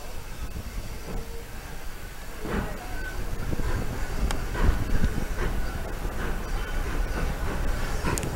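Heritage train's carriages rolling slowly along a station platform, a low rumble that builds from about two and a half seconds in, with several sharp clicks of the wheels passing over rail joints.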